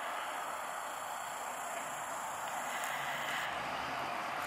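Steady outdoor background noise of distant road traffic, with a faint low rumble rising near the end.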